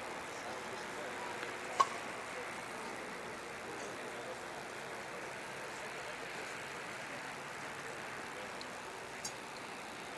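Faint steady crowd chatter, broken about two seconds in by one sharp pop: a baseball smacking into the catcher's mitt on a warm-up pitch. A much fainter click comes near the end.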